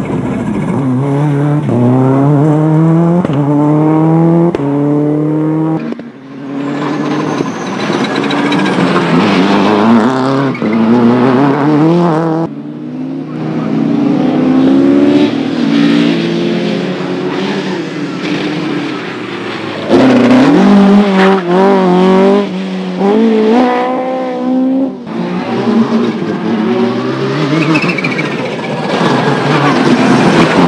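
Rally cars accelerating hard, the engine note climbing and dropping back with each quick upshift, over several separate passes. Among them are a Subaru Impreza WRC and a Mk1 Ford Escort.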